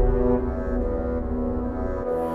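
Background music of slow, long-held low notes, with a change to new notes at the very end.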